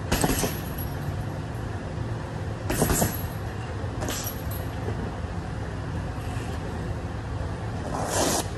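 Boxing gloves landing punches on a teardrop-shaped heavy bag hung on chains: sharp thuds at the start, near three seconds and about four seconds in, with a fainter one after, over a steady low background rumble.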